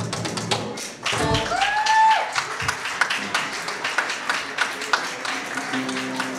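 Acoustic guitar music with sharp percussive taps in a steady rhythm, and a short held note about a second in that drops off at its end.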